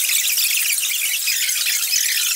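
A loud, grainy hiss with no low end that holds steady through the whole stretch.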